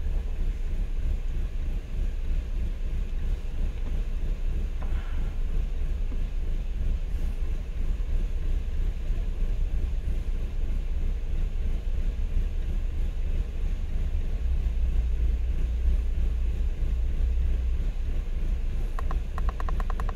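2003 Toyota Corolla's 1.8-litre inline-four engine idling, a steady low rumble. The engine has a misfire that makes it shake, and both oxygen sensors read 0 volts.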